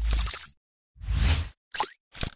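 Sound effects of an animated logo intro: two whooshing bursts, each with a low thump, about a second apart, then two short quick sounds with a gliding pitch near the end.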